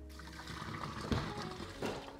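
Hot pasta water pouring out of a steel pot through a plastic colander held over its mouth, splashing into a stainless steel sink as boiled elbow macaroni is strained.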